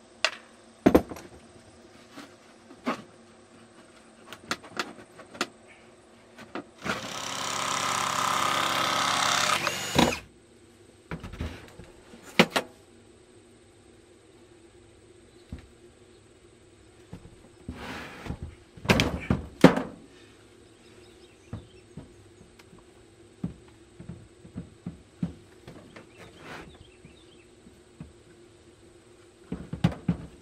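A cordless drill runs for about three seconds, driving a screw into a wooden panel. Around it are scattered knocks and thunks of boards and the fridge being handled, the loudest a few heavy thumps a little past the middle.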